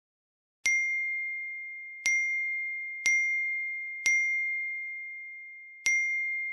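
Five identical phone message-notification dings: each is a single high, bell-like tone struck sharply that rings out and fades. They come about a second apart, with a longer pause before the last.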